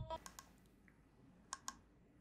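Near silence, with two faint, sharp clicks in quick succession about one and a half seconds in; the intro music stops just as it begins.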